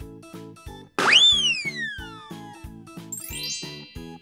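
A cartoon sound effect over cheerful children's background music with a steady beat. About a second in it starts suddenly with a falling whistle that glides down over about two seconds, marking the green balloon bursting. Near the end comes a quick rising twinkly sweep.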